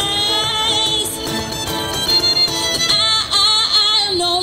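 Acoustic street band playing an instrumental passage, a violin carrying the melody over strummed strings, cello, bass and cajon.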